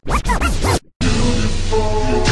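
A DJ record scratch, a quick run of rising and falling squeals lasting under a second, cuts in over a break in the music. After a brief silence the slowed-down chopped and screwed R&B track comes back in about a second in.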